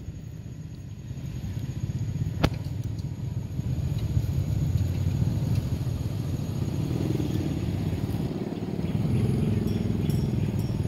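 Low, steady rumble of a motor vehicle running, growing louder about a second in, with a single sharp click a couple of seconds in.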